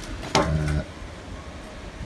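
A single short spoken word about half a second in, then steady faint background noise.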